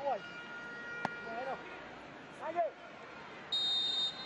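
Referee's whistle, one short high blast near the end, signalling that the penalty kick may be taken. Before it there is faint open-stadium ambience with a few short distant shouts.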